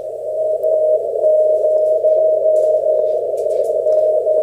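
Icom IC-7300 receiving a weak CW beacon through a narrow 450 Hz filter, played on an Elecraft SP3 speaker. A steady hiss of band noise carries a mostly unbroken Morse tone held just above the noise.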